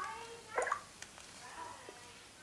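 A smartphone being handled, with a few faint clicks, and a brief murmur of voice about half a second in.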